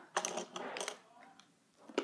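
Quick small clicks and rustling from handling a plastic My Little Pony candy dispenser toy and a foil packet of candies, mostly in the first second, then a lull and one sharp click at the end.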